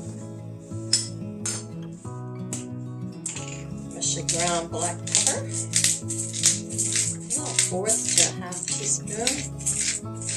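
Background music, with a hand pepper mill grinding black pepper over it: a quick run of gritty clicks starting about three and a half seconds in.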